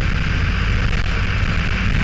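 Mercedes-Benz LO-914 minibus's OM904 four-cylinder diesel running steadily under way, heard from inside the passenger cabin, with road and body noise over it.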